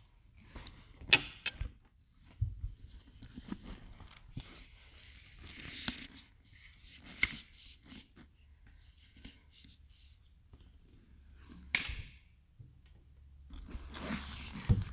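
A soft microfiber helmet bag rustling and sliding as a motorcycle helmet is pulled out of it by hand. A few sharp knocks and clicks are mixed in, the loudest about a second in and again near the end.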